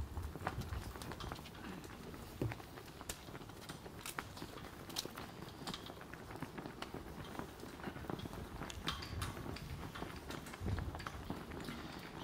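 Faint scattered clicks, taps and shuffling from people moving and handling things at a podium microphone, with a few low thumps of the microphone being bumped, near the start and again near the end.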